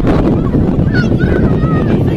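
Wind rumbling on the microphone, with a few short, high, wavering calls in the second half.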